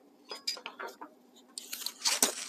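A sock-covered stick rubbing inside a glass halogen headlight as it is handled: small clicks and knocks, then a scratchy rubbing that starts in the last half second.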